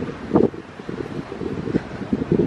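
Wind buffeting the microphone outdoors, an irregular low rumble that rises and falls in gusts.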